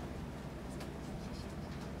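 Faint rustling and a few light clicks of papers being handled and gathered at a desk microphone, over a steady low hum.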